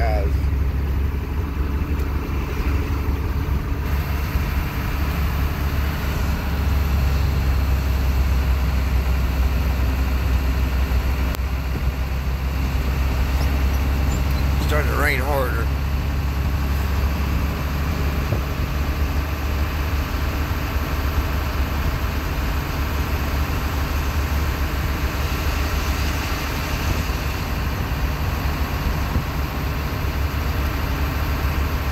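GMC truck's engine running steadily, heard from inside the cab as the truck drives slowly, with a constant low drone and road noise. A short wavering, voice-like sound comes through about halfway.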